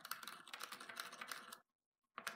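Pencil point scratching rapidly on wood, marking screw holes through a metal leg bracket: a quick run of fine scratchy clicks that stops about one and a half seconds in.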